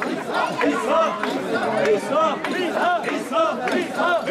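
Crowd of mikoshi bearers chanting a short call over and over in many overlapping male voices, a quick repeating rhythm of shouts kept up while carrying the portable shrine.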